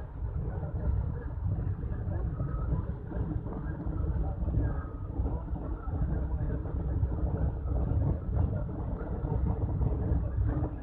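Road vehicle driving: a steady, uneven low rumble of engine and road noise.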